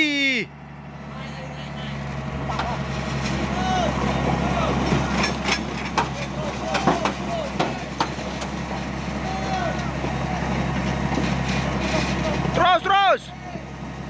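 Heavy diesel engine of a motor grader running steadily under load as it pulls an overturned dump truck by cable, building up over the first few seconds and then holding. A few sharp knocks sound in the middle, along with short faint shouts from people nearby.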